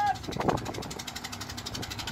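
Ship's engine running with a steady low hum, with a man's short shout about half a second in.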